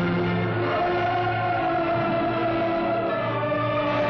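Choral music: a choir singing long, held notes in slowly changing chords.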